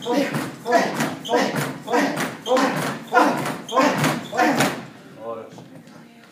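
Rapid repeated jumping knee strikes against resistance bands on a training platform: about eight in a quick, even rhythm, each with a thud and a voiced exhale, stopping abruptly about five seconds in.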